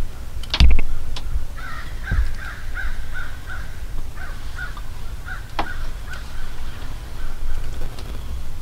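A loud thump about half a second in, then a bird calling in a long run of short, evenly spaced notes, about three a second, fading near the end.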